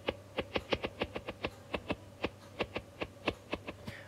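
Stylus tips tapping on an iPad's glass screen while handwriting, a quick irregular run of light clicks, several a second, over a faint low hum.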